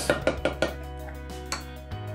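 A spoon knocking against a metal stockpot, a few quick clinks in the first half second, then quieter, over faint background music.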